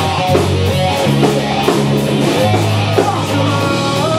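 Live rock band playing loudly: distorted electric guitar over a drum kit, with sustained low notes and steady drum and cymbal hits.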